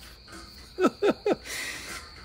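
A man's short chuckle, three quick falling 'ha's about a second in, ending in a breathy exhale, over a steady high-pitched cricket trill.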